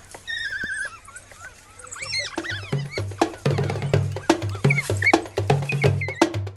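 African wild dogs twittering: a high, wavering squeaky call in the first second. Percussive music with a steady beat comes in about two seconds in and runs on.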